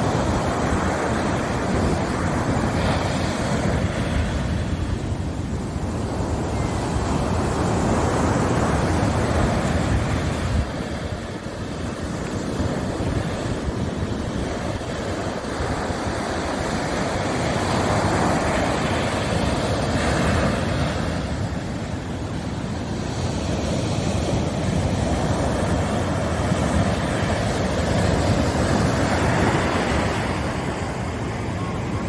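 Sea surf breaking and washing up a sandy beach: a continuous rush that swells louder and eases off again about every ten seconds as each set of waves comes in.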